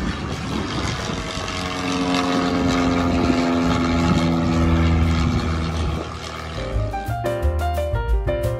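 Aircraft engines passing low overhead on approach: a steady roar with a few held tones whose pitch falls slightly as it goes by. Background music cuts back in near the end.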